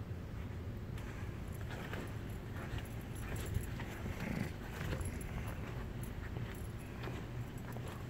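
Quiet room tone of a large church interior: a steady low hum with faint scattered taps and rustles.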